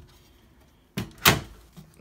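A glass display cabinet's door, which sticks, knocking shut about a second in: a light click, then a louder thud a quarter second later.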